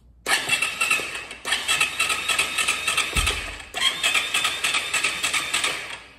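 2021 Yamaha YZ450F single-cylinder four-stroke engine being cranked on its electric starter in three tries: a short one, then two of about two seconds each. Each is a fast, even churning that stops sharply without the engine ever firing. It turns over too easily because the engine has no compression, with the crankshaft and connecting rod snapped.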